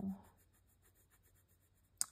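A fountain pen nib scratching faintly on paper in quick, repeated short strokes, shading in a bar on a journal page.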